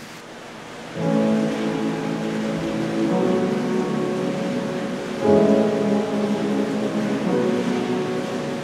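Church organ playing held chords, starting about a second in, with the chord changing twice.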